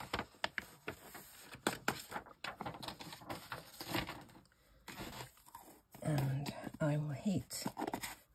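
A sheet of paper crinkling and scraping as loose gold embossing powder is tipped off it back into its pot, with small clicks and taps from the pot. A low murmuring voice comes in near the end.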